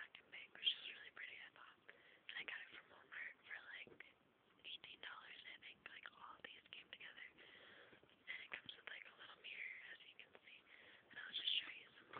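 Soft, quiet whispered speech.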